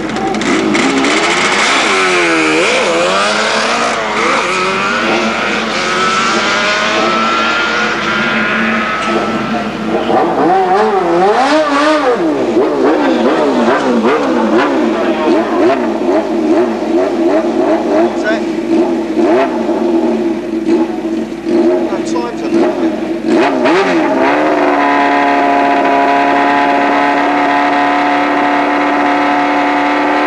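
Motorcycle engines at a sprint start line. The throttle is blipped, then the bike pulls away hard with a climbing engine note over the first several seconds. More revving follows, rising and falling, and from about five seconds before the end an engine is held steady at high revs.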